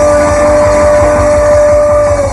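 A live rock duo's closing note: a singer holds one long steady note over a rapid drum roll and a ringing guitar chord.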